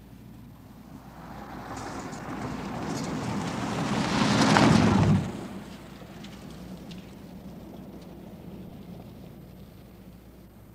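A car approaching on a dirt road, its engine and tyres growing steadily louder as it nears and passes close, then cutting off suddenly about five seconds in, leaving a steady low hum and hiss.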